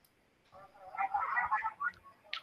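A person's voice speaking indistinctly, starting about half a second in after a short quiet, heard through the video call's compressed audio.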